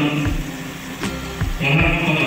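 Music: a chant-like song with a sung voice and occasional percussion strokes. The singing drops away for about a second in the middle and comes back near the end.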